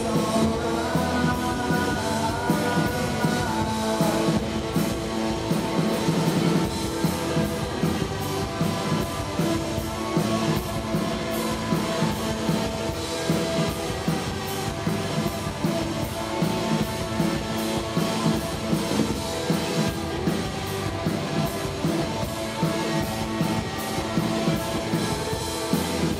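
Rock band playing live: two electric guitars over a drum kit in a loud, steady-driving passage.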